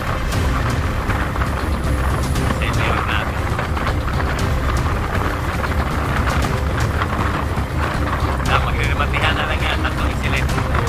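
Motorcycle engine running with wind rushing over the microphone, a steady low rumble, while riding at speed.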